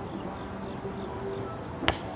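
Crickets chirping steadily in a fast, even pulse, with one sharp smack near the end as a hand strikes the volleyball on a serve.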